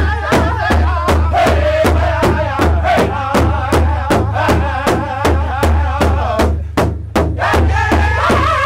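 Powwow drum group singing an intertribal song: several men striking one large hide-covered drum in unison, a steady beat of a little under three strokes a second, under loud wavering group singing.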